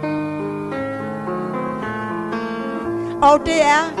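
Live band accompaniment for a Danish schlager song, a keyboard playing a melody of held notes that steps from one note to the next. Near the end a woman's voice cuts in loudly on a wavering, vibrato note.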